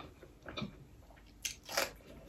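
Close-miked bites into a raw green vegetable: two crisp crunches near the end, after a quieter start.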